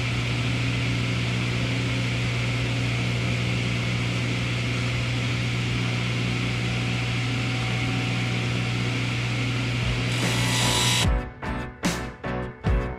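Table saw running free without cutting: a steady electric-motor hum under an even hiss from the spinning blade. It cuts off suddenly about a second before the end, where music takes over.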